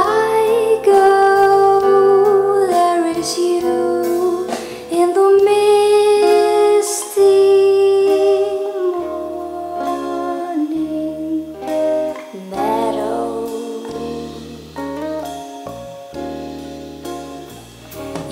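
A woman singing a song with long held notes over a plucked guitar accompaniment.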